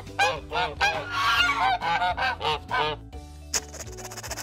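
Domestic white geese honking, a rapid run of short calls for about three seconds, with soft background music underneath.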